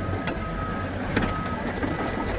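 Tracked log loader's diesel engine running steadily while it swings a log, with a high whine that comes and goes and a single knock a little past a second in.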